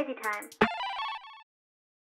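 A brief high-pitched voice line in an animated intro, followed by a short electronic jingle of two held, ringing notes that cuts off about halfway through.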